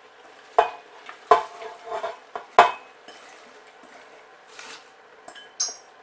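A stainless steel mixing bowl knocks against the rim of a steel Instant Pot inner pot four times in the first three seconds, each knock ringing briefly, as shredded cabbage is tipped and pushed out of it. Softer rustling of the cabbage follows.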